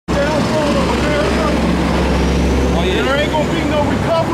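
Steady low engine drone of a motor vehicle in street traffic, stopping near the end, with indistinct voices of people talking over it.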